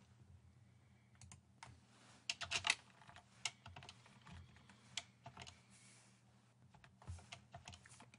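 Computer keyboard keystrokes: faint, irregular clicks and taps, some in quick clusters, as code is edited.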